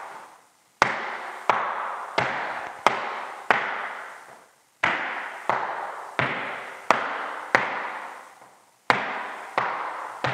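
Flamenco shoes striking a wooden floor in a bulerías marking step: sharp, evenly spaced strikes about every two-thirds of a second, each ringing out briefly. They come in runs of five with a short pause between runs.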